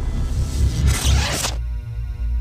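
Logo-intro sound effect: a swelling whoosh over a deep rumble that cuts off about one and a half seconds in, giving way to a held musical chord.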